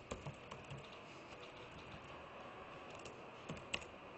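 Faint typing on a computer keyboard, scattered key clicks over a steady room hiss, with one sharper click near the end.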